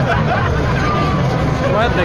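Large crowd of street demonstrators, many voices talking and calling over one another in a steady, loud hubbub over a low rumble.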